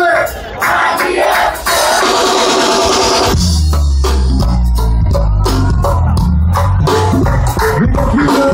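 Live go-go band music: a steady drum and percussion beat over bass. The bass drops out near the start and comes back about three and a half seconds in.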